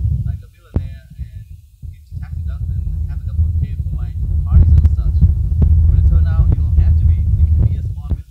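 A person talking over a loud, steady low rumble, with a few sharp clicks.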